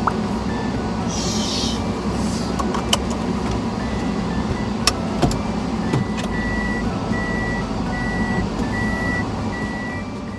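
Kei van engine idling inside the cab, with a few sharp clicks as the seatbelt is buckled. From about six seconds in, a single high beep repeats a little more than once a second: the cab's warning beep for reverse gear as the van starts to back out.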